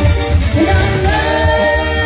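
Live rock band playing a song, a woman singing lead over electric guitar, bass, drums and keyboards, with a steady beat and a long held note coming in about halfway through.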